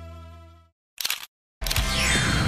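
Background music: a held chord fades out, then after a moment of silence a short click-like burst sounds about a second in. New music starts loudly after another short gap, with a falling swoosh over it.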